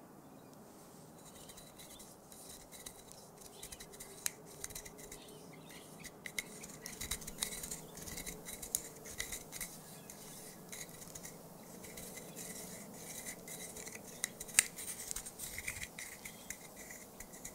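Close-miked ASMR scratching and tapping: a dense run of small clicks and scraping on a hard object, growing busier after about six seconds, with one sharper click near the end.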